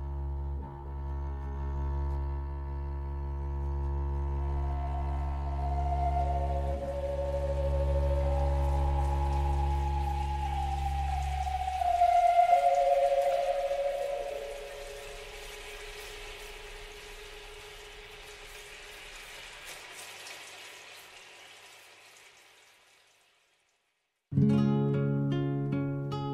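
Orchestral music closing an instrumental introduction. A sustained low drone under held chords gives way, after a swell about halfway through, to a higher held line that steps downward and fades away to silence.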